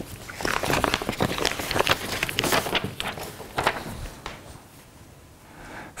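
Paper rustling and crackling as an envelope is opened and a card pulled out of it, a dense run of crisp crinkles that dies down after about four seconds.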